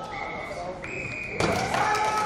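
A steady high whistle tone that steps up slightly in pitch just under a second in, then a sudden louder burst of shouting voices and noise about three quarters of the way through.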